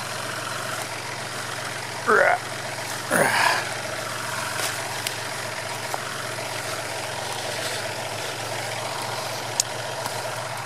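Kubota tractor's diesel engine idling steadily, with two brief louder sweeping sounds about two and three seconds in.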